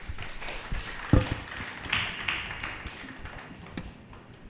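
Handling noise at a wooden pulpit as a tablet is set down and hands are placed on it: scattered taps and knocks, one loud thump about a second in, and a short rustle about two seconds in.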